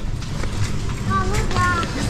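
Grocery-store background: a steady low hum with faint scattered clicks, and a faint distant voice about a second in.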